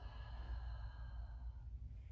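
A long audible exhale, soft and fading away over about two seconds, over a low steady room hum.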